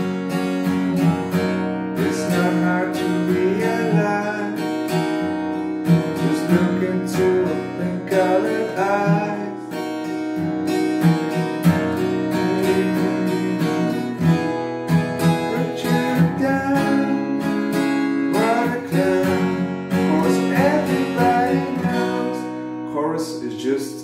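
Steel-string acoustic guitar capoed at the second fret, strummed and picked through a chord progression of A major 7 with an E bass, D, B minor and E in a steady rhythm, the chords ringing on between strokes.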